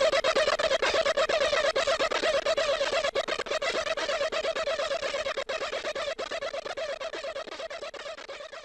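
Modular synthesizer noise drone: a dense, crackling texture of fast, irregular clicks over a single wavering mid-pitched tone, slowly fading out.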